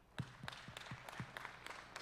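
Congregation applauding: many hands clapping, breaking out suddenly just after the start.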